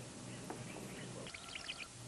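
Faint birds chirping over low background hiss, with a quick cluster of short high chirps in the second half.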